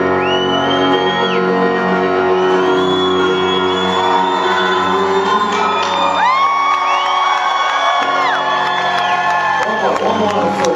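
A held keyboard chord ringing out at the end of a song while a concert crowd cheers, whoops and whistles. The chord dies away about eight seconds in as the cheering goes on.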